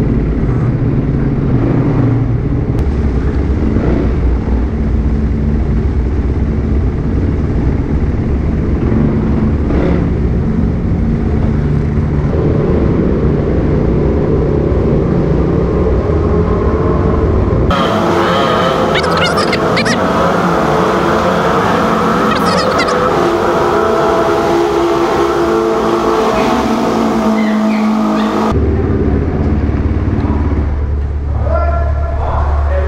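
Yamaha WR450 supermoto's single-cylinder four-stroke engine running as it rides through a concrete drainage tunnel. About two thirds of the way through the sound suddenly turns thinner and brighter for about ten seconds, then the low engine note comes back.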